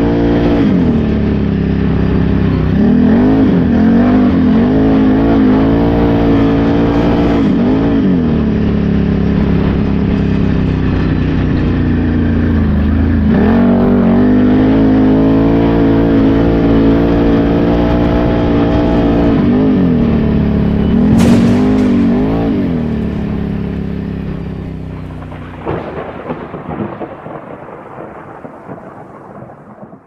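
Can-Am Renegade X mr 1000R ATV's V-twin engine running under way, its pitch rising and falling again and again as the throttle is opened and eased off, over a low rumble of wind on the microphone. A single sharp knock comes about two-thirds of the way through, and the sound then fades out over the last several seconds.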